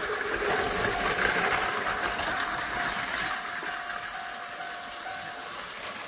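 Two battery-powered Tomy Plarail toy trains running on plastic track: a steady small-motor whir with a thin, even whine, getting slowly quieter as they run on.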